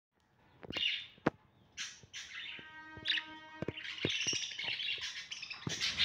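A flock of caged budgerigars chirping and chattering, with a run of quick high calls and scattered sharp clicks.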